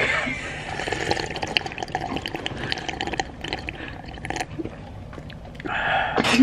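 Close-miked drinking from a plastic cup: wet sipping with a run of small liquid clicks at the lips that thins out after about four seconds.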